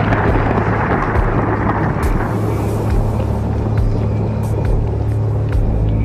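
The rumble of an explosion dying away over the first two or three seconds, over a steady low droning music bed.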